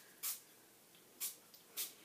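Three short spritzes from a hand-pump spray mist bottle, each a brief hiss: the first soon after the start, then two close together in the second half.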